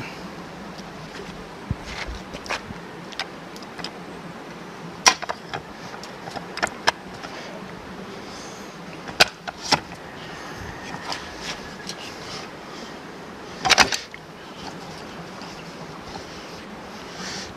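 Scattered short clinks and knocks as the parts of a riding-lawnmower transmission are handled: gears cleaned in a metal pot, then the transaxle with its wheels set on a steel stand. There is a louder clatter just before the fourteenth second.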